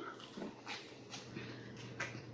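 Faint chewing of a mouthful of buttered microwave popcorn: a few soft, irregular crunches.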